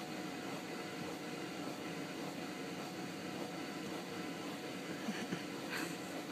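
Inflatable bounce house's electric blower fan running steadily: a constant rush of air with a faint hum.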